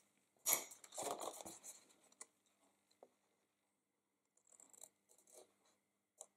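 Paper scissors cutting through cardstock, with the card rustling as it is handled: a few louder snips and rustles in the first second and a half, a pause, then faint short snips near the end.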